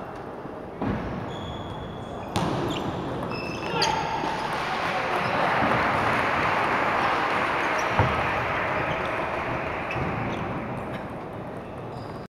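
Table tennis ball clicking off paddles and table a few times in the first four seconds as a point is played, with short high squeaks. Then a swell of crowd noise fills the large hall for several seconds, with one sharp knock partway through.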